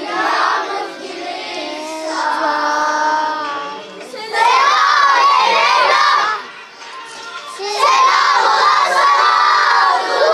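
A group of children singing and chanting in unison, loud and shouted: a sung line with held notes, then two loud shouted chant phrases of about two seconds each, about four and eight seconds in.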